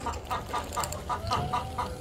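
Hens clucking, a run of short repeated clucks, over a low steady hum from the small pump that circulates the water through the drinker cups.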